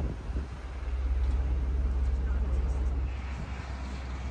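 Steady low engine rumble of street traffic, easing slightly near the end.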